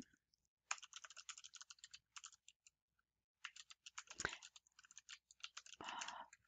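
Faint typing on a computer keyboard: a quick run of keystrokes, a pause of about a second, then a second run of keystrokes.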